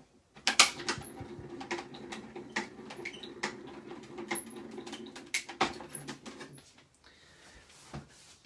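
Die-cutting machine running as a die and backing sheet pass through it, cutting the card. A steady hum with many sharp clicks over it starts about half a second in and stops about six and a half seconds in.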